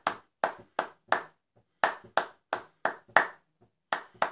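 Hand clapping a simple rhythmic beat: sharp claps about three a second, four in a row, a short break, then another run.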